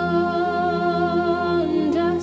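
Mixed-voice choir singing a cappella, holding a sustained chord; near the end one of the parts moves to a new note.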